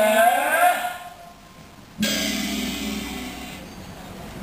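A Teochew opera performer's voice holds a sung or chanted line with sliding pitch, ending about a second in. About two seconds in, one sudden struck hit from the opera's accompaniment rings out and slowly fades.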